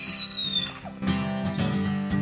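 A high, whistle-like cry that shoots up and slowly sinks, then acoustic guitar strumming begins about a second in, opening a country-style song.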